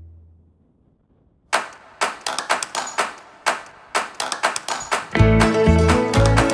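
Background music. One track fades out, there is about a second of silence, and then a new track begins with sharp, spaced strokes. A bass line and fuller accompaniment come in near the end.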